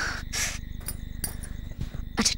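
Crickets chirping steadily in a night-time ambience, with a few short hissing sounds over them.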